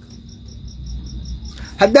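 Insect chirping: short high chirps at an even rate of about five a second over a faint steady high whine, with a man's voice starting again near the end.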